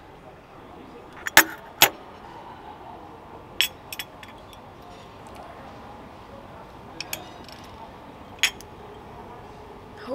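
Sharp clinks and taps of a teaspoon and a small porcelain espresso cup on its saucer, the two loudest between one and two seconds in, then scattered lighter ones over a steady low background noise.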